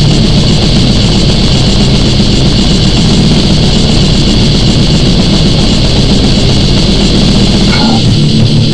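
Death metal recording: heavily distorted guitars over drums, dense and loud without a break.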